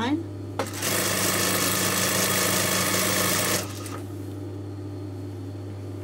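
Industrial sewing machine stitching a straight seam in a burst of about three seconds that stops abruptly, over a steady motor hum that continues after the stitching stops.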